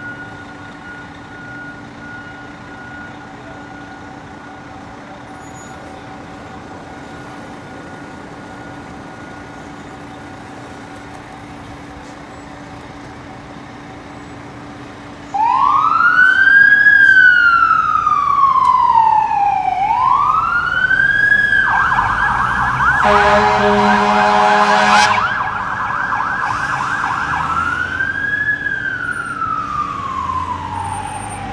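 A fire engine's siren switches on about halfway in with a loud rising-and-falling wail, changes to a fast yelp with a deep horn blast for a few seconds, then goes back to the wail. Before it starts there is a steady idling engine and traffic hum.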